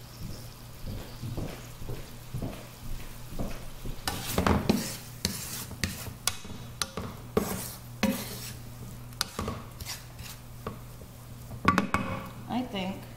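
Wooden spatula stirring and scraping raisins in melted butter around a nonstick frying pan: a run of irregular scrapes and taps, busiest from about four seconds in, with a sharp knock against the pan near the end.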